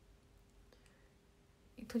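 Near silence: quiet room tone with a faint steady hum and a couple of faint clicks, then a woman starts speaking near the end.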